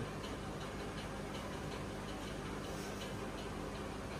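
Quiet room tone: a steady low hum with faint, light ticks.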